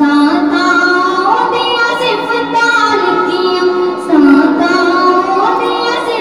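A female voice singing a naat, an Urdu devotional song in praise of the Prophet, in long drawn-out notes that glide slowly up and down.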